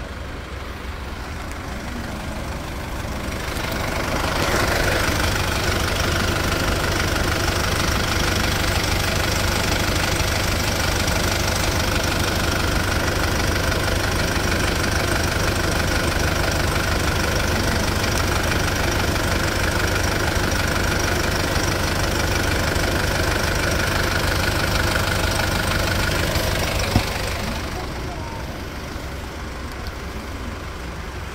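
SsangYong Korando's engine idling steadily. It grows louder about four seconds in, holds steady, and falls back near the end, with one small click just before it fades.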